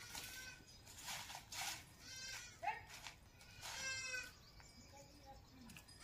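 Two faint, high, wavering animal calls in the background, a couple of seconds apart, like a goat bleating, with some soft rustling between them.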